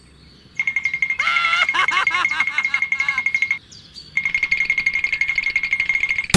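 Cartoon sound effect of rapid, high-pitched electronic beeping, like a bomb's countdown, in two runs with a short break near the middle. A squeaky, sped-up cartoon voice chatters over the first run.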